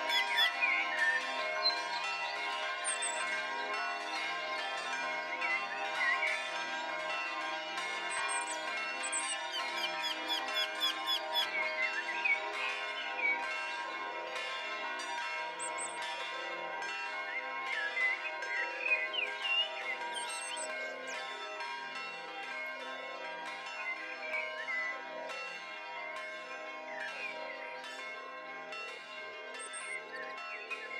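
Church bells pealing: many bells struck in quick, continuous succession, their tones overlapping and ringing on, fading a little toward the end.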